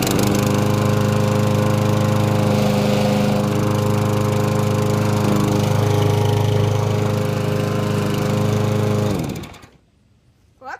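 Walk-behind rotary lawn mower's small single-cylinder engine running steadily at a constant speed just after starting, then shutting off about nine seconds in, its pitch falling as it spins down.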